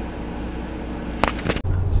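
Steady hum of a window air conditioner in a small van interior, broken by a couple of short sharp sounds just over a second in. Near the end it gives way abruptly to the low steady drone of a car driving, heard from inside the cabin.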